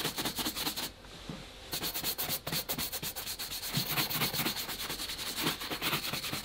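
A shoe brush buffing off boot polish that has been left to set on an army boot, in quick, even back-and-forth strokes, several a second. The brushing pauses briefly about a second in, then resumes.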